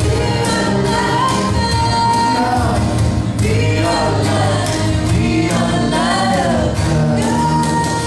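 Live acoustic band playing a song: a woman sings lead with voices behind her, over acoustic guitars strummed in a steady beat of about two strokes a second.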